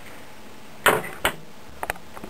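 Two sharp taps about a second in, then a few faint clicks near the end: small metal hand tools, among them a digital caliper, handled and set down on a wooden workbench.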